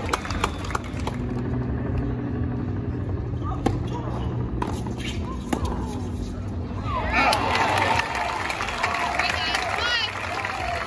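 Tennis ball struck by rackets in a doubles rally: sharp single pops about a second apart over crowd murmur and a steady low hum. From about seven seconds in, the crowd's voices swell in excited shouts.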